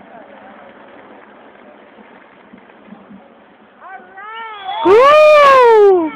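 A person's drawn-out exclamation of "oh", high-pitched and rising then falling, very loud and close to the microphone so that it distorts, near the end. Before it only faint outdoor background.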